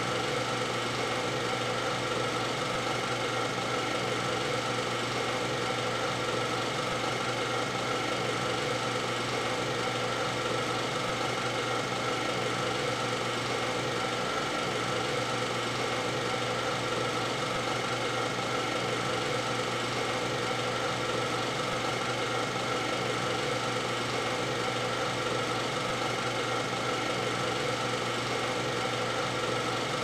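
Film projector running: a steady mechanical whirr with several constant tones, unchanging throughout.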